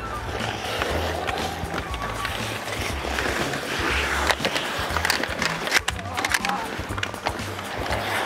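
Ice skates scraping and carving on the ice as several hockey players skate a drill, with sharp clacks of sticks and puck. Background music with a steady bass beat plays underneath.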